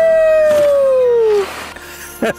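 A person's long, loud "woooo!" whoop that jumps up to a high pitch and slides slowly down for about a second and a half, then stops.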